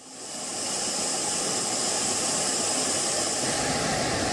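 Steady rushing noise of jet aircraft in flight, swelling up over the first second and then holding level.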